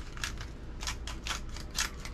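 Handheld seasoning grinder mill being twisted, a quick run of short gritty crunches, about four or five a second.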